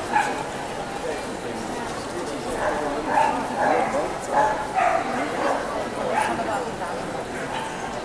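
A dog barking and yipping in short bursts, most of them between about three and five seconds in, over the chatter of a crowded hall.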